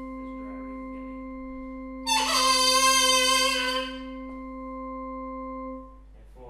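A steady electronic drone tone holds one pitch and cuts off just before the end. About two seconds in, a loud, bright sustained note sounds over it for under two seconds.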